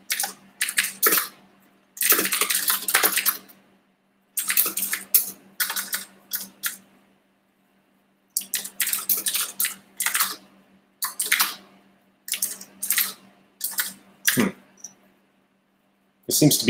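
Typing on a computer keyboard: quick runs of keystrokes in bursts of a second or two, separated by short pauses, over a faint steady hum.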